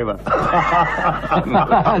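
Men's laughter, a hearty chuckling from more than one voice.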